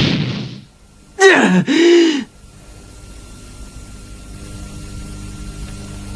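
A short two-part pained groan from a cartoon character, about a second in, its pitch rising then falling. Music fades out just before it, and a faint steady hum follows.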